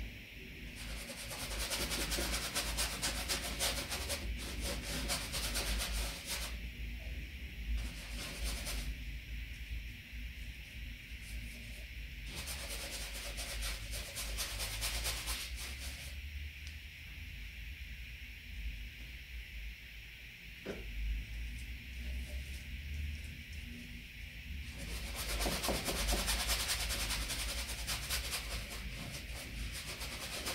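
Paintbrush scrubbing oil paint onto canvas in quick, repeated scratchy strokes. The strokes come in spells of a few seconds each, with quieter pauses between.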